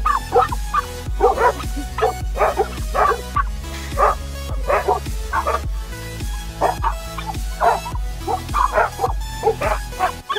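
Dogs barking over and over, about one or two barks a second, over steady background music with a bass line.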